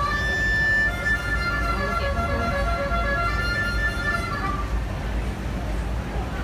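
Harmonica played into a handheld microphone: long held chords for about four and a half seconds, then fading out. A steady low rumble of vehicles sits underneath.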